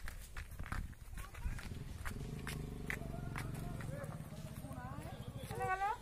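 Footsteps clacking on the slats of a slatted footbridge, with a low steady drone through the middle, and brief voices near the end.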